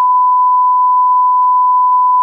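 Colour-bars test tone: one loud, steady beep at a single pitch, the standard reference tone that goes with a test-pattern screen.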